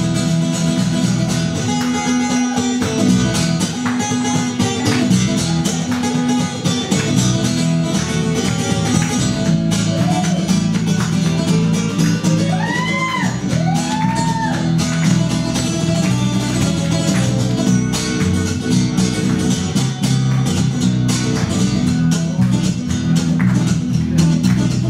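Acoustic guitar played solo, strummed and picked in a steady rhythm through an instrumental break, with no singing. About halfway through there are a couple of short notes that rise and fall in pitch.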